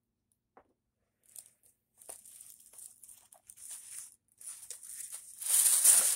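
Plastic packaging crinkling and rustling as a wig is taken out of its bag, in quick bursts that begin about a second in and grow loudest near the end.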